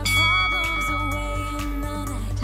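A Tabata interval-timer app's bell chime rings once at the start and fades over about a second and a half, signalling the end of a work interval and the start of rest, over background music.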